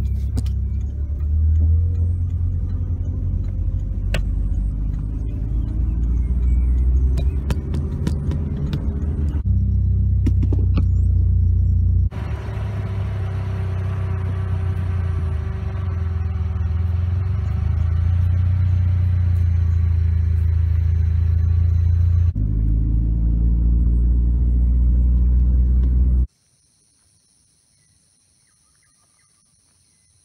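A car driving, heard from inside the cabin: a loud, steady low rumble of engine and road noise, with a few sharp clicks and knocks about 4 to 9 seconds in. About 26 seconds in it cuts to a much quieter scene with a faint, steady high buzz of insects.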